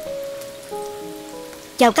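Hot oil crackling and sizzling on freshly deep-fried small fish, under soft background music of long held notes. A woman's voice starts speaking right at the end.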